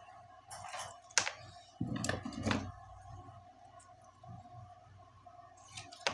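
Hands working with aluminium foil tape and a stencil on a workbench. Short rustles and crinkles come through, with one sharp click about a second in and a longer rustle around two seconds, over a faint steady hum.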